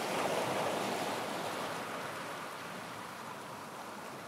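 A soft, steady rushing like water or surf, swelling in the first moment and then slowly easing off.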